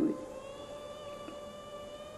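Soft background music of a few sustained, held tones, with no beat.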